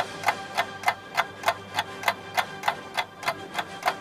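Steady clock-like ticking, about three and a half ticks a second, over soft held musical tones: a ticking-clock 'thinking' cue.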